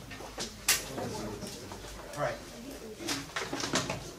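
Classroom room sound: low voices and shuffling, with one sharp click just under a second in and a few lighter knocks near the end.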